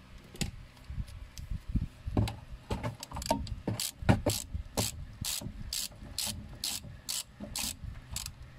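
Hand ratchet wrench clicking in repeated short strokes as a brake caliper bolt is run in. The strokes are sparse at first, then come about twice a second.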